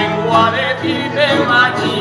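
Aragonese jota played live by a folk band of guitars and accordion, with a voice singing long, wavering notes over it.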